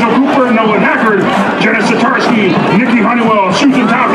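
Speech only: a man's voice announcing, reading out a list of names, over a stadium public-address system.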